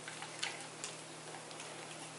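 A dog licking, its tongue and mouth making a few sharp wet clicks, the two loudest close together near the middle.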